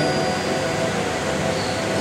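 Steady hiss-like background noise with faint held tones underneath.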